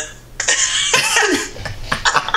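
A man laughing hard in breathy, coughing bursts, starting about half a second in.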